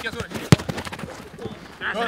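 A football kicked hard: one sharp thud about half a second in, followed by a few lighter knocks of the ball and feet. Players' shouting starts up near the end.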